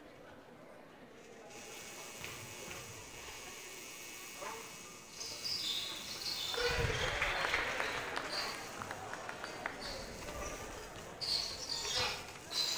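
Quiet gym ambience with faint crowd voices during a free throw. About six and a half seconds in, the made shot brings a swell of crowd cheering and a basketball bouncing on the hardwood floor.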